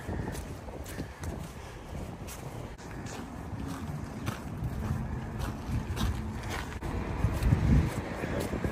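Wind buffeting the microphone in gusts, strongest near the end, over a low background rumble, with footsteps on a muddy dirt path. A faint steady hum comes in about midway.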